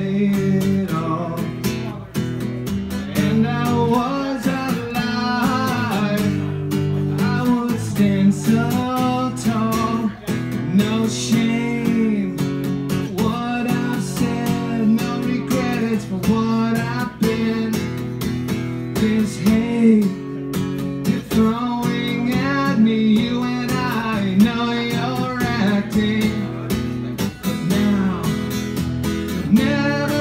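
A man singing over a strummed acoustic guitar, a steady chord accompaniment under the sung melody.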